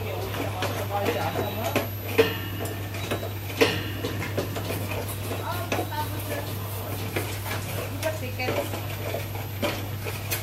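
A steady low electrical hum with faint, indistinct voices in the background. Two sharp clicks come about two seconds and three and a half seconds in.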